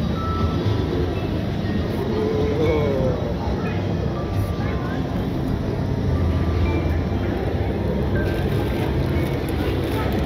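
Steady low rumble mixed with indistinct voices and music, the ambient soundscape of a haunted attraction.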